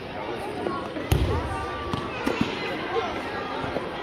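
A judoka thrown onto the judo tatami, landing with one loud thud about a second in, followed by a few lighter knocks on the mat. Children's voices chatter throughout in the reverberant hall.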